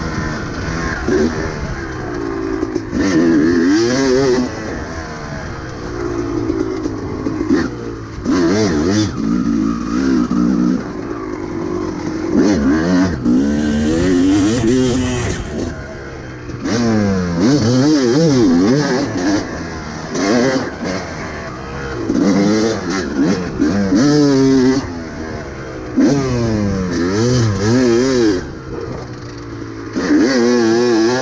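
Kawasaki KX250 two-stroke single-cylinder dirt bike engine being ridden hard, revving up and easing off again and again, its pitch rising and falling with each burst of throttle.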